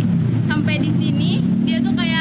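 A woman speaking, in short phrases, over a steady low rumble of motor-vehicle engine noise.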